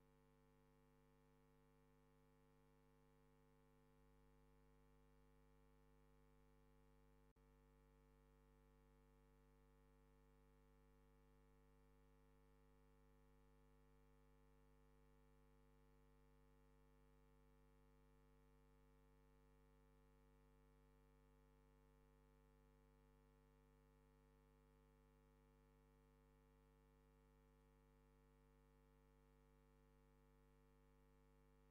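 Near silence, with only a faint steady hum.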